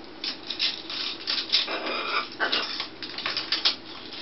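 Hard plastic bracelets clacking and rattling against each other and a PVC post as two macaws pick at them with their beaks, in quick irregular clicks, with a louder, rougher burst about two seconds in.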